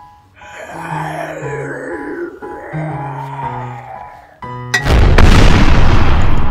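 Outro music with short stepped notes and two long sweeping whooshes. Just under five seconds in, a sudden, very loud, rumbling blast cuts in, a comic exhaust-blast sound effect that goes with a cartoon cloud of smoke.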